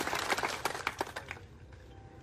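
A crowd applauding: scattered hand claps that thin out and die away about a second and a half in.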